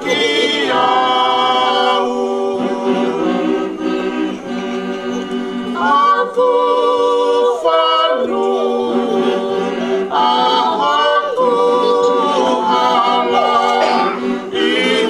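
Congregation singing a hymn a cappella, men's and women's voices together in long held notes with no instruments, with a brief break between phrases a little past the middle.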